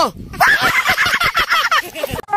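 A man laughing: a fast run of high, falling cries lasting about a second and a half.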